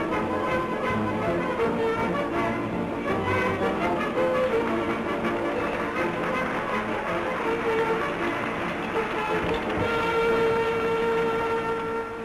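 Dance-band music with brass accompanying a hoop-spinning act, ending on a long held note near the end.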